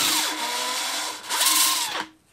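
Drill spinning a 3-inch ABS pipe with sandpaper held against its end: the motor's whine under the scratchy rub of the paper on the plastic, deburring the cut edge. The drill eases off about halfway, speeds up again and stops at the end.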